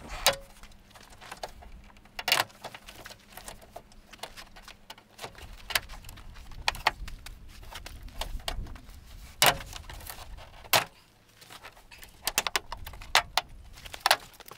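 Plastic retaining clips of a 2013 Toyota Sienna's rear liftgate trim panel popping loose one at a time as the panel is pried off by hand: separate sharp snaps a few seconds apart with light plastic rattling, and a quicker run of snaps near the end as the last clips let go.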